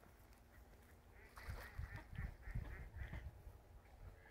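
Waterfowl calling: a run of about six short, faint calls, roughly three a second, starting about a second in and stopping shortly before the end.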